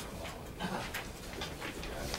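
Paper rustling and being handled in several short, scratchy strokes, over a low steady room hum.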